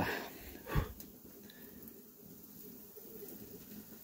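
A single short breath from a man, about three-quarters of a second in, then faint steady outdoor background.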